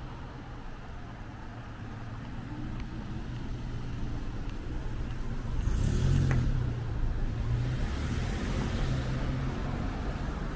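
Cars driving past on a town street: engine and tyre noise builds to a van passing close by about six seconds in, then another car goes by near the end.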